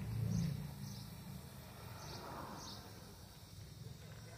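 Faint outdoor street ambience: a low rumble that swells in the first second and then fades, with faint short high ticks every second or so.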